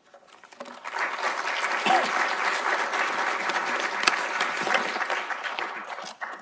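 An audience clapping, the applause building up about a second in, holding steady, and fading out near the end.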